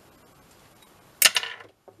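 A short, loud clatter a little over a second in, after faint room noise: something, most likely a hand tool, knocked or set down hard on the craft table.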